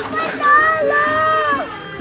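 A child's voice holding one long high-pitched call for about a second.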